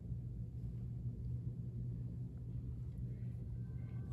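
Steady low hum of room tone, with no distinct sound events.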